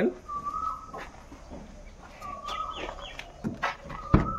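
A bird calls twice in the background, each time a short call that rises and then holds level. Near the end comes a couple of sharp clicks from the car's rear door handle being pulled.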